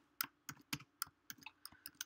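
Typing on a computer keyboard: a quick, irregular run of faint keystroke clicks as a line of code is typed.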